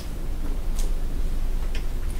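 Steady low room hum with a couple of faint ticks, one under a second in and one near the end.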